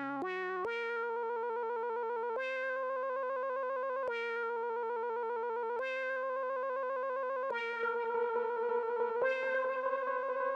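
Experimental electronic synth music playing back from an LMMS project, processed through the Glitch effects plugin. A synth line runs in short stepped notes, then in long held notes with a fast wobble, changing note every second or two. From about three quarters of the way in, the sound turns grittier and choppier.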